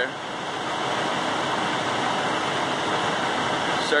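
Steady engine noise: an even drone with no clear rhythm or change in pitch.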